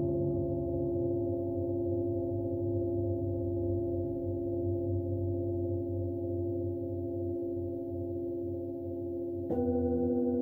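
Singing bowls ringing on in long, steady overlapping tones, one of them pulsing slowly as the tones beat against each other, with a low hum beneath. Near the end a metal bowl is struck and a fresh, louder set of tones begins.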